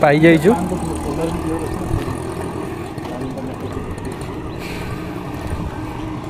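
Steady roadside traffic noise from motor vehicles running along the road, with a faint swell about two-thirds of the way through.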